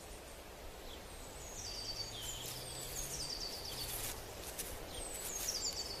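Quiet outdoor ambience with a small bird singing: short runs of high notes that step down in pitch, about two seconds in and again about four and a half seconds in, over a faint low hum.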